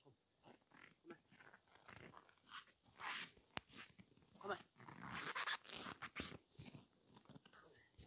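Siberian husky vocalizing in short, irregular sounds, one of them gliding up and down in pitch, mixed with scuffing and rustling as its harness is handled in the snow.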